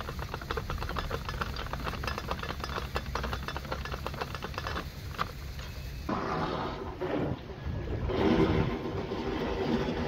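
Lock paddle gear being wound up with a windlass, its ratchet pawl making a rapid, even clicking over the gear teeth as the paddle is raised. The clicking stops after about five seconds and a lower, rougher rumble takes over.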